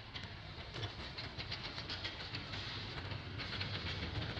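Steady outdoor background noise: a low rumble with many faint crackles and ticks scattered through it, and no animal calls.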